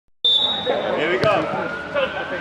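A football kicked once, a sharp thud about a second in, over players' voices on a five-a-side pitch. A steady high tone sounds during the first second.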